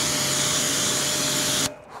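Pressure-washer jet spraying water onto a car tyre and wheel: a steady hiss with a low hum under it, cutting off near the end.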